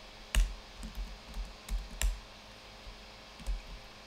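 Computer keyboard keystrokes, about six scattered key presses with soft thuds, the loudest near the start and about two seconds in, while code is typed and edited.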